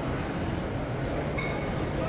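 Steady low rumbling background noise of a large indoor mall space, with no distinct events.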